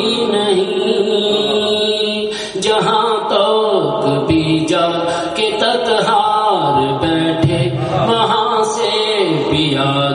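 A man chanting verses solo in a melodic, drawn-out style, his voice gliding up and down between long held notes.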